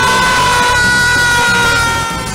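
A man's long, loud scream held at one high pitch for about two seconds, fading near the end, over music.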